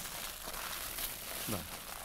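Aluminium foil crinkling as hands fold and crimp a foil parcel shut.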